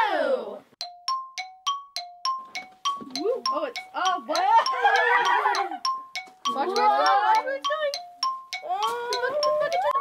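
Bright children's background music: a steady run of short bell-like notes, about four a second, switching between two pitches, with some sliding melodic or vocal sounds in the middle.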